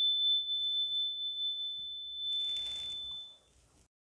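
Single-bar metal chime on a wooden resonator block ringing out after one mallet strike: one clear high tone slowly fading away and dying out about three and a half seconds in. A brief soft rustle comes near the middle.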